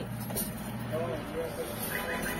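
A road vehicle passing on the highway just outside the stall, a steady rush of engine and tyre noise, with faint voices under it.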